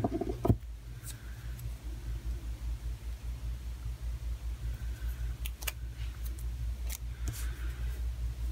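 Steady low room hum, with a sharp knock about half a second in and a few faint clicks later on.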